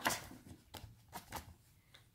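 Card flap of a lift-the-flap picture book being flipped up and pressed flat by hand: a short papery rustle, then a few soft clicks and taps over the first second and a half.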